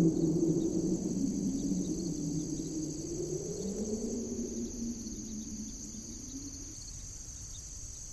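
Steady chorus of crickets in the night, under soft, low soundtrack tones that slowly bend in pitch and fade away towards the end.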